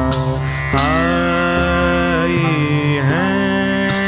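Devotional song (bhajan) playing as background music: a melodic line that slides between held notes over a steady low accompaniment, between sung lyric lines.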